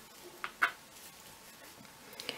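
Wooden knitting needles and yarn working stitches: two faint, short clicks close together about half a second in, over quiet room tone.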